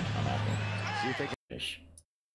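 NBA game broadcast sound: arena crowd noise and a commentator's voice, with a basketball bouncing on the court. It cuts off abruptly about one and a half seconds in, followed by a brief faint noise.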